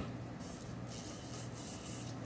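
Faint sucking of a cocktail up a drinking straw, in two short stretches.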